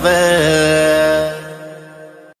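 The end of a Haryanvi song: a singer holds a long final note over the backing music, and the whole mix fades out over the second half.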